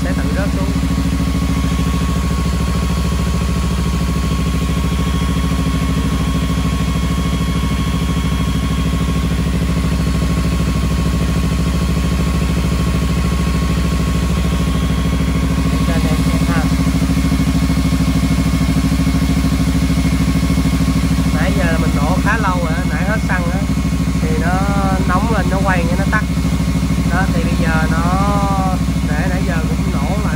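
Kawasaki Z300's parallel-twin engine idling steadily while it warms up toward the temperature at which the radiator fan cuts in.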